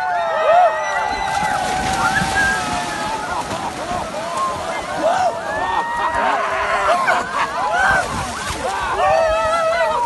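A crowd of people splashing through ice-cold lake water, with many voices yelling and shrieking over one another throughout.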